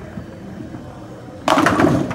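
Storm Code X bowling ball rolling down the lane with a low steady rumble, then crashing into the ten pins about a second and a half in. The pin crash, a sudden clattering scatter, is the loudest sound.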